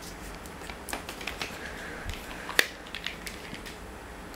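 Small plastic clicks and knocks as a foam micro dart is pushed onto a Nerf Ramrod's barrel and the blaster is handled, with one sharper click about two and a half seconds in.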